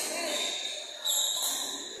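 Badminton rally sounds on an indoor court: a sharp racket hit on the shuttlecock about a second in, with shoes squeaking on the court floor and voices in the hall.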